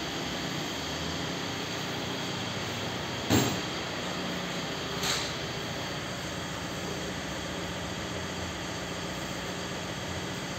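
Steady workshop background hum, with a sharp knock about three seconds in and a lighter knock about two seconds later.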